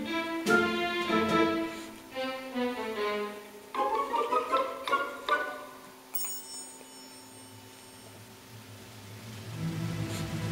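Background music: a melody of separate pitched notes, growing busier about four seconds in, with a high chime about six seconds in, then quieter held tones.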